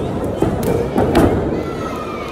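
Wrestlers hitting the canvas and boards of a wrestling ring: about four heavy thuds in the first second and a half, with voices shouting around the ring.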